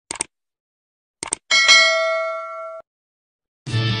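Subscribe-button animation sound effect: two quick clicks, two more about a second later, then a single bell ding that rings for just over a second and cuts off. Music with guitar starts just before the end.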